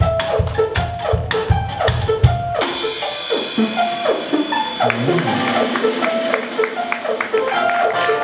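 Live band music with drum kit and melody: a steady kick-drum beat under a sliding melodic line, then about two and a half seconds in the kick drops out and a cymbal wash takes over while the melody carries on.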